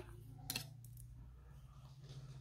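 Quiet handling noise: one sharp click about half a second in and a fainter one near a second, over a low steady hum.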